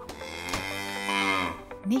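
A cow mooing: one long call lasting about a second and a half, over background music.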